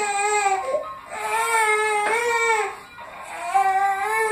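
A fussy baby crying in three long, drawn-out wails with short breaks between them, the middle one the longest.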